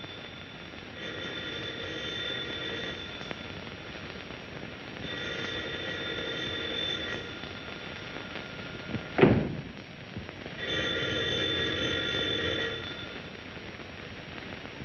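Telephone bell ringing in three rings of about two seconds each, with pauses between them. A single sharp thump comes about nine seconds in and is louder than the rings.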